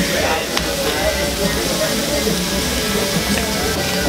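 Busy taco-stand ambience: background music and people talking, over a steady hiss.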